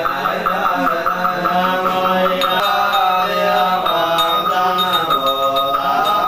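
Buddhist sutra chanting by monks' voices in a steady recitation, with a small bowl bell struck twice and left to ring.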